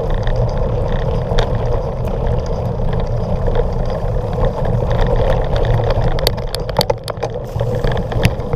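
Wind buffeting an action-camera microphone over a steady rumble of tyres rolling fast down a rocky dirt trail. Sharp rattling clicks from the bike jolting over stones grow thicker in the last couple of seconds.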